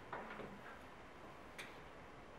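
Faint clicks of test leads and connectors being handled on a lab circuit board, with one sharper click near the end.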